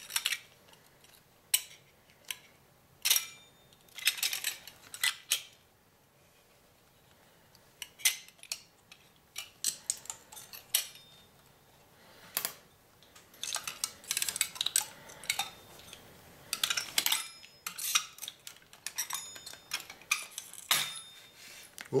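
Small metallic clicks and clinks of a screwdriver and tiny screws on a hard drive's metal parts as its platter clamp is unscrewed and the pieces are handled. The clicks come in scattered bursts, with a quiet stretch about a third of the way in and busier clicking in the second half.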